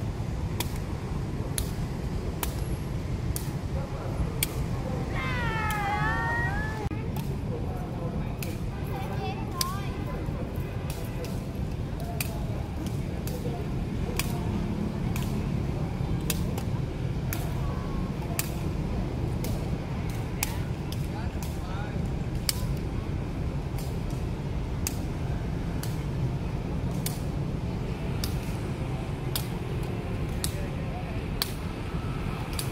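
Repeated sharp taps of a feathered shuttlecock being kicked back and forth, about one a second, over a steady low rumble. About five seconds in, a dog gives a brief whining cry of a few falling wails.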